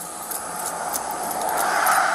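A pickup truck approaching on the road, its tyre and engine noise building steadily and growing loudest near the end.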